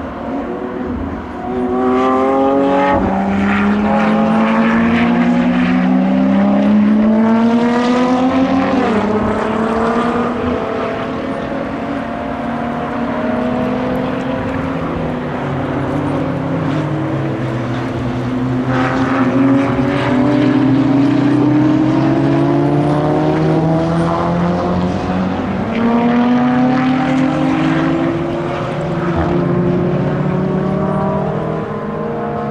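Sports cars accelerating hard out of a corner one after another, among them a Lamborghini Aventador. Several engine notes overlap, each climbing in pitch and dropping back at an upshift, in three waves as groups of cars pass.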